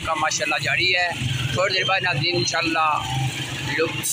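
A man talking continuously over street traffic, with a small vehicle engine running steadily underneath.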